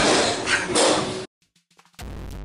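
Loud, muddled live-music din in a room, picked up on a handheld phone, that cuts off abruptly a little over a second in, leaving a moment of silence.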